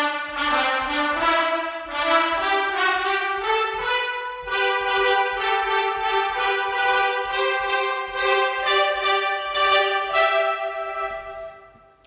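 Sampled two-trumpet section (Fluid Brass Kontakt library) playing rapid repeated short staccato notes, about three a second. The line steps upward over the first few seconds, then keeps repeating one pitch, and ends in a fading reverb tail.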